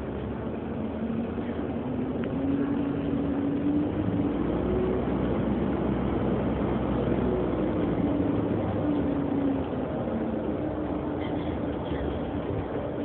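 Inside an Alexander Dennis Enviro400 hybrid double-decker bus on the move: a steady rumble of drive and road noise with a whine that rises and falls in pitch as the bus speeds up and slows.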